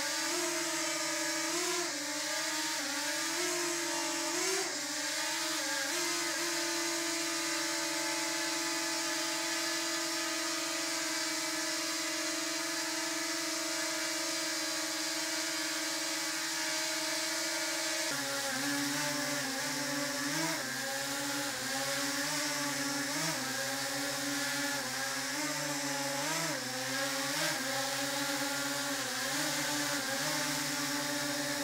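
DJI Mini 2 quadcopter hovering, its four motors and propellers making a steady whir of several pitched tones that waver as the motors adjust, then hold steady for a while. About eighteen seconds in the tones change abruptly as the stock DJI propellers give way to Master Airscrew propellers, and the pitch wavers again.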